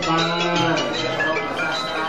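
Khmer Buddhist devotional chanting: a low voice holds a long, slightly wavering note, over a musical accompaniment.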